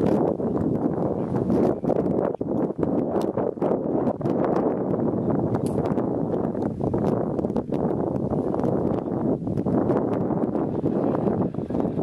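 Wind buffeting the camera microphone, a steady loud rush, with scattered small clicks and knocks throughout.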